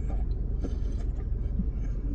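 A steady low hum inside a car cabin, with a few faint clicks from people chewing.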